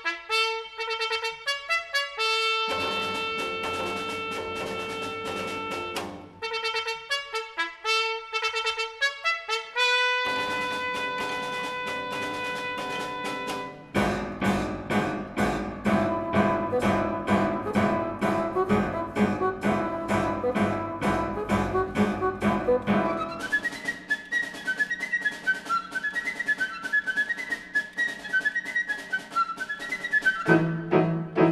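Chamber ensemble playing a trumpet fanfare for military honours: two runs of short repeated notes, each ending on a long held note. About fourteen seconds in, the whole ensemble joins in, and a higher running melody enters over it near the end.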